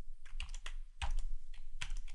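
Computer keyboard being typed on: several separate key clicks at an uneven pace.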